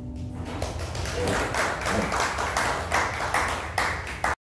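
The last acoustic guitar chord dies away, then applause from a small audience swells. Loud, evenly spaced claps from one person close by stand out over it.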